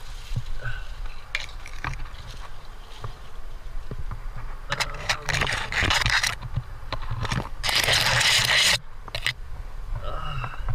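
Scraping and rustling right at a helmet-mounted camera as a climber brushes against rock and leafy branches. Scattered small knocks and a steady low rumble run under it, with two longer bursts of scraping about halfway and near the end; the second is the loudest.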